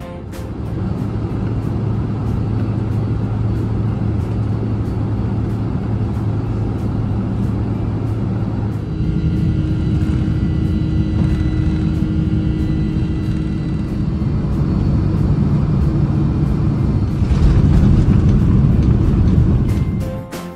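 Jet airliner heard from inside the cabin by the wing: steady engine and runway rumble during takeoff, changing in sound about nine seconds in, then a louder rush of engine noise near the end as the aircraft is back on the runway.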